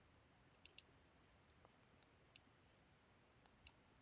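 Near silence, with a handful of faint, scattered computer mouse clicks.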